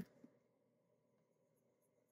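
Near silence, with the faint scratch of a felt-tip marker colouring in a space on a paper savings chart.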